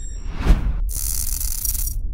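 Logo-intro sound effects: a rising whoosh that peaks in a deep bass hit about half a second in, followed by about a second of harsh high digital static from the glitch transition, over a low bass drone.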